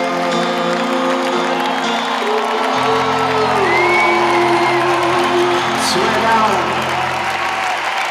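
A live band holds long sustained chords at the close of a song, changing chord about three seconds in, while a large arena crowd cheers and whoops over it.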